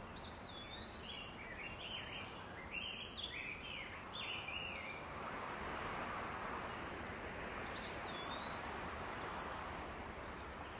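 Outdoor ambience with a songbird singing a quick run of chirps and warbled whistles, then one more whistled call near the end, over a steady hiss that grows a little louder about halfway through.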